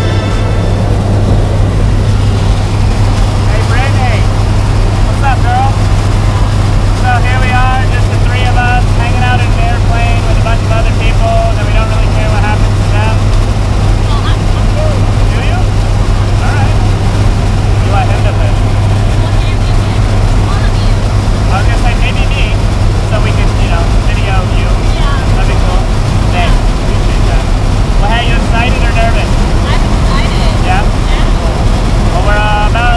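Skydiving jump plane's engines droning steadily, heard inside the cabin during the climb, with people's voices faint under the noise.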